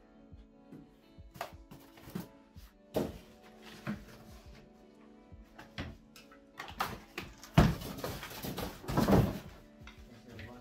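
Background music over the handling of packed parts in a cardboard box: scattered knocks, then a loud crinkling rustle of plastic wrapping from about 7.5 to 9.5 seconds in.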